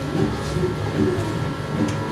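Steady hum and buzz of live-stage guitar amplifiers and PA between songs, with faint scattered room sounds.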